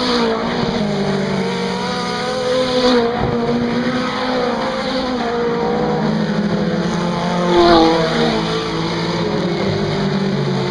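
Several mini stock race car engines running as the cars race through a turn, their pitch rising and falling. The sound swells louder about three seconds in and again near eight seconds as cars pass closer.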